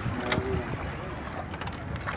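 Low wind rumble on the microphone over a steady wash of water around a small rental boat on a lake.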